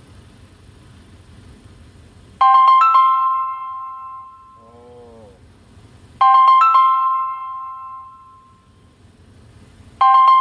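Phone ringtone: a short piano-like run of chiming notes ending in a held note that dies away. It starts about two seconds in and repeats about every four seconds.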